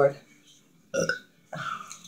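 A woman burping: a short, loud burp about a second in, then a second, longer burp about half a second later.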